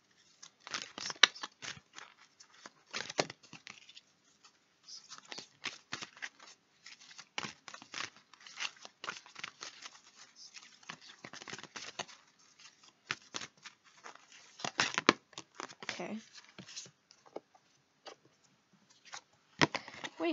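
A deck of oracle cards being shuffled by hand: a long run of quick, irregular card snaps and rustles, with a few short pauses.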